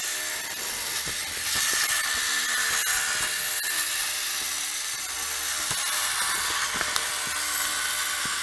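Tightrope Walking Gyrobot's battery-driven gyroscope wheel spinning at high speed: a steady, high-pitched whir. A few light clicks and paper rustles come from a booklet being handled.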